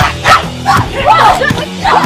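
Women's short shouts and shrieks in quick bursts as they grapple and trade blows in a fight, over background music.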